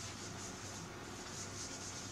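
Faint whiteboard eraser rubbing across a whiteboard in repeated back-and-forth strokes.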